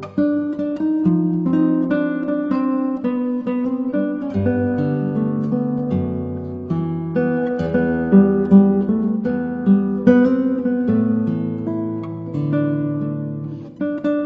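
Instrumental guitar music: a steady run of plucked notes over held bass notes.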